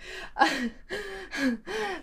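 A young woman's breathy "ah" followed by a few short, gasping laughs.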